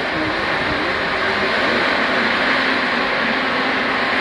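Misting cooling fan running: a loud, steady rush of blown air and water spray from the fan and its spiral nozzle ring, over a faint low motor hum.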